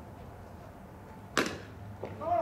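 A single sharp smack of a pitched baseball at home plate, about one and a half seconds in, over faint open-field noise.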